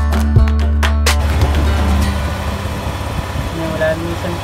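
Background music with a beat and guitar for about the first second, then a cut to the Malaguti Madison scooter's engine running, louder at first and settling to a steady idle about two seconds in, while its radiator is being leak-tested.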